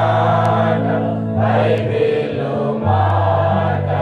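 Group worship singing, a choir or congregation, over sustained low instrumental notes that change pitch every second or so.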